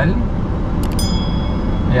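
A click, then a bright bell-like chime from a 'subscribe' button sound effect, ringing out and fading over about a second. Beneath it, the steady low rumble of the car's engine and road noise inside the cabin.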